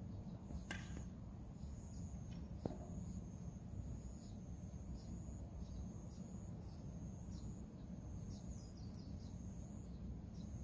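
Faint garden ambience: scattered short bird chirps over a steady high thin tone, with low wind rumble on the microphone. Two light clicks about a second in and just before three seconds.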